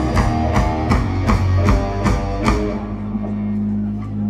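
Live rock band closing a song with a run of about seven accented hits on drum kit and electric guitars, roughly three a second. The hits then stop and the guitars are left ringing with a steady amplifier hum.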